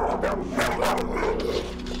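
American bulldog barking aggressively in a rapid series of barks, about three a second: protective barking at a visitor to the house.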